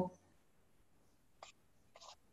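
Near silence after a voice trails off, broken by two very short, faint vocal noises, one about one and a half seconds in and one at the end.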